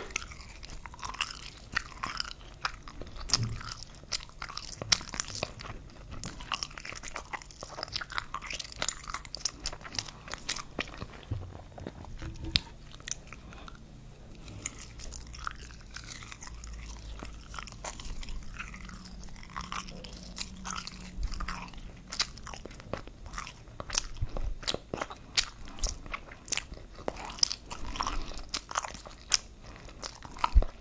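Mouth sounds of someone chewing soft wurstel (frankfurter sausage), with many small sharp clicks throughout.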